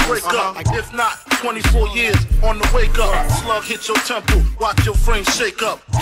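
Hip hop music performed live: a beat with deep bass hits under rapped vocals.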